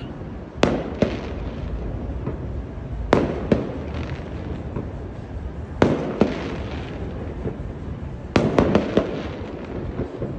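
Fireworks going off: sharp bangs in pairs about half a second apart, roughly every two and a half seconds, then a quick cluster of several near the end. Each bang trails off in an echo over a steady low rumble.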